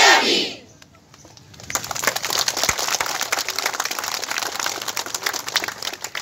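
A crowd's shouted chant ending about half a second in, then after a short lull the crowd breaks into applause, clapping continuously through the rest.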